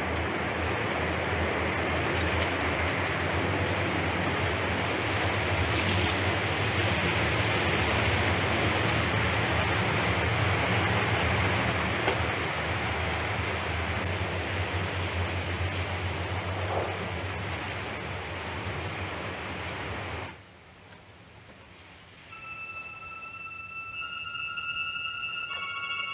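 A loud, steady rushing noise with a deep rumble under it, which cuts off suddenly about twenty seconds in. Near the end, sustained music tones begin.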